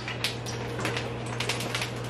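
Small scattered clicks and taps of objects being handled, over a steady low hum.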